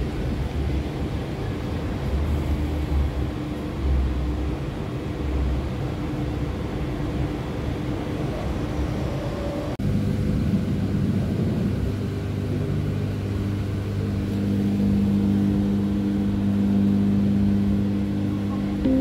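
Electric commuter train running, heard from inside the carriage as an even low rumble. About ten seconds in the sound changes abruptly to a steadier hum with low droning tones from the train's running gear.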